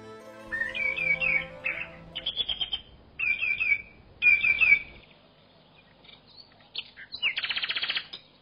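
Small birds singing, repeating short chirping phrases over the first five seconds, then quieter, with a fast rapid trill near the end. The tail of a music track fades out at the very start.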